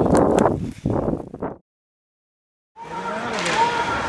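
Wind and handling noise on the camera microphone outdoors in snow, cut off abruptly about a second and a half in. After about a second of silence, the sound of a hockey game in an ice rink comes in, with echoing voices and play noise.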